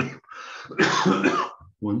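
A man clearing his throat, with a short spoken word near the end.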